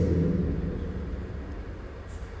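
Low steady rumble of background noise, fading over the first second as a voice trails off.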